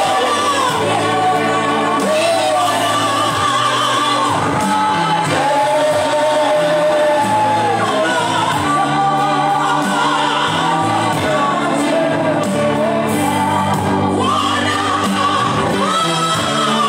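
A congregation singing a gospel song together, long held notes rising and falling over a steady low accompaniment, loud and unbroken.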